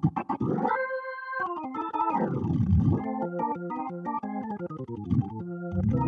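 Hammond B3 organ sound from a Nord Stage 3 stage keyboard, played loosely and percussively: quick repeated chord stabs, a held note, a glissando sliding down and back up the keys, then rhythmic chords, and a sustained chord near the end.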